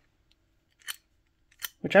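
Two short metallic clicks from a Craftsman half-inch drive ratchet being handled, about a second in and again just before speech resumes.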